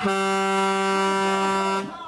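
Race start horn sounding one steady, single-pitch blast of nearly two seconds that cuts off sharply, signalling the start of the race.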